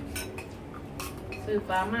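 Metal spoons and forks clinking and scraping on ceramic plates and bowls while eating, with a few sharp clinks. A voice speaks briefly near the end.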